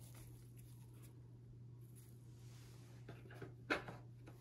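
Very quiet room tone with a steady low hum, broken by a brief click or knock a little before the end.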